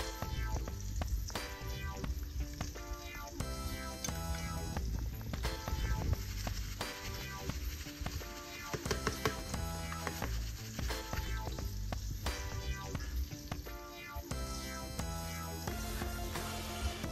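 Background music with a steady beat, over a steady sizzle of olive oil frying in a pan.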